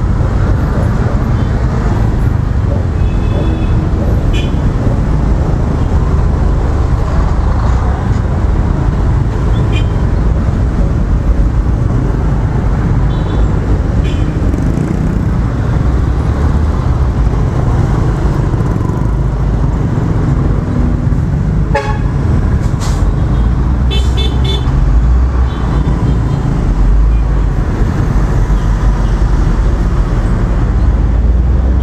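Riding a Honda automatic scooter slowly through congested city traffic, heard from a helmet-mounted action camera: a steady, loud low rumble of engine and road noise. Other vehicles give several short horn toots, with a cluster of them about 24 seconds in.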